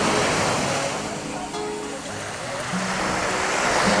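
Sea surf washing around people wading waist-deep: a steady rush of water that swells near the start and again toward the end.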